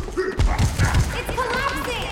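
Fists pounding a rock wall: a quick run of about four heavy thuds from about half a second in, with effortful grunts and short voice sounds around them.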